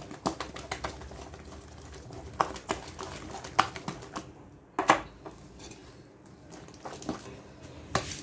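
A utensil being worked through thick, heavy butter-cake batter in a glass bowl: irregular clicks and scrapes against the glass with soft squelches of batter, the loudest knock about five seconds in.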